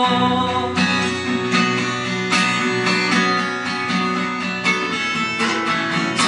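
Acoustic guitar strummed in a steady rhythm, about one strum every three-quarters of a second.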